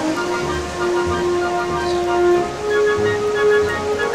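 Music with a slow melody of long held notes stepping from one pitch to the next over a faint low pulse, against a steady background hiss.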